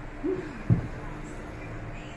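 A short hummed vocal sound from a person, rising then falling in pitch, followed by one sharp knock a little under a second in.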